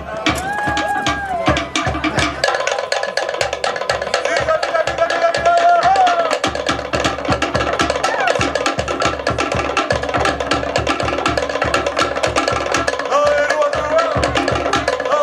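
Polynesian drumming with rapid, densely packed wooden strokes, typical of Tahitian log drums, with a few held melody tones above it.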